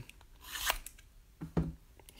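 A brief rasping scrape of hands on a shrink-wrapped trading-card box, about half a second in, with a few faint clicks of handling.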